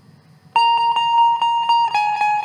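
Indian banjo (bulbul tarang) playing a melody note with fast tremolo picking, starting about half a second in and held for over a second, then stepping down to a slightly lower note near the end.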